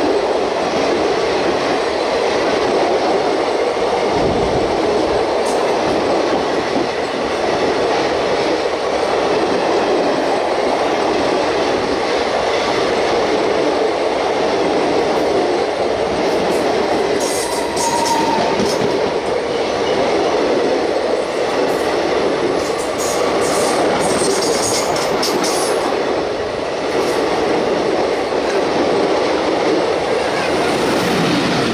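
Passenger coaches of a 24-coach express train rolling past close by: a steady, loud rumble and rattle of wheels and running gear on the track, with clickety-clack over rail joints. A few short high squeaks and clicks come in the second half.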